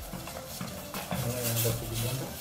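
A spoon stirring and scraping in a steel saucepan of cooking tomato and onion sauce, with a faint sizzle. A low voice hums briefly in the second half.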